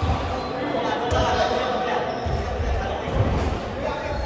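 Echoing sports-hall din: indistinct voices in a large hall with intermittent dull thuds on the court floor.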